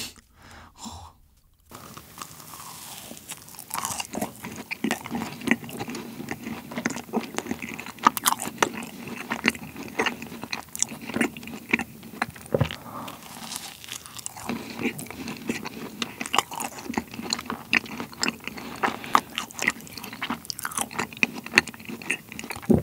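Close-miked biting and chewing of a matcha latte macaron with a thick cream filling. After a quiet start, the mouth sounds run on continuously from about two seconds in, full of small sharp clicks.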